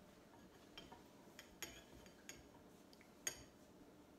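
A metal ladle clinking lightly against a ceramic mixing bowl while cake batter is scooped out: a few faint, scattered knocks, the sharpest about three seconds in.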